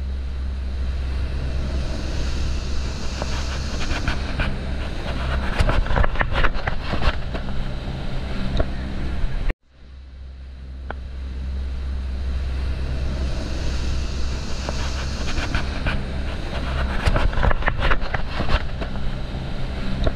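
Dive boat's engine running with a steady low drone, with wind and a run of knocks and rattles from gear on deck. The sound cuts off sharply about halfway and the same stretch starts over.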